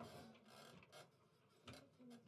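Near silence: faint room tone with a few soft rustles.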